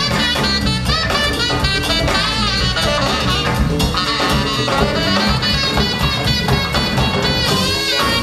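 Tenor saxophone playing a live solo of quick runs and bending notes over electric bass and drum kit.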